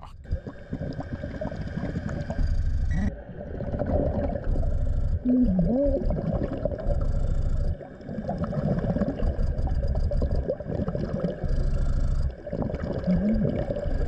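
Scuba diver breathing through a regulator underwater: a rush of air and bubbles about every second and a half to two seconds, over a faint steady hum.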